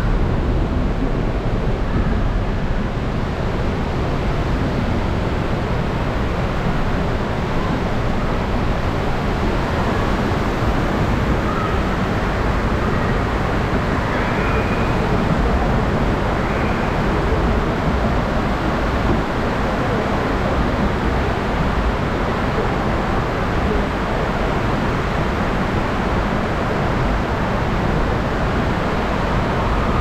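Steady rush of water in a Hopkins log flume channel as the log boat floats along through an enclosed tunnel.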